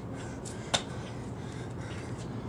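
Burpee on a concrete driveway: one sharp slap about three-quarters of a second in as the athlete's body strikes the concrete pushing up from the floor.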